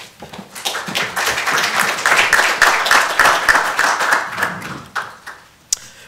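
Audience applauding, building up over the first two seconds and dying away about five seconds in. A single sharp click comes just before the end.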